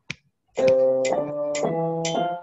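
Electronic keyboard heard over a video call, playing one sustained note per beat that climbs step by step, over a metronome clicking about twice a second (120 beats a minute). A single click comes just after the start, and the notes begin about half a second in.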